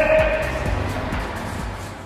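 Background music: a held note dies away in the first half second over a soft low beat, and the whole fades out near the end.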